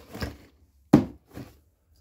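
A cardboard skate box set down with a dull thump about a second in, followed by a lighter knock.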